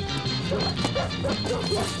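Several dogs barking and yipping in quick succession, beginning about half a second in, over background music.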